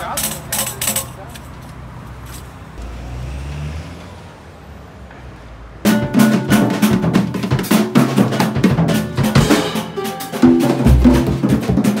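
Low rumble of a car going by for the first few seconds. Then, from about six seconds in, loud pagode music starts abruptly: a cavaquinho strummed over a drum kit and hand drums.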